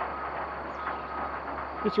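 Rock quarry machinery heard from a distance: a steady mechanical rumble and low hum, with a faint high tone coming and going.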